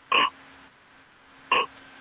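Two short, croaky vocal sounds from a person, one right at the start and another about a second and a half later.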